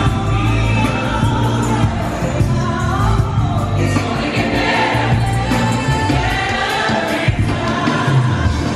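Live amplified music with a lead singer and a choir singing together in a gospel style, heard from the audience over a concert sound system, with crowd noise underneath.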